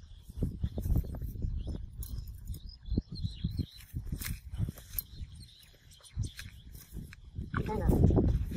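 Men's voices talking outdoors over a low rumble, with scattered small clicks and rustles from barbed wire being twisted and tied by hand onto a fence post.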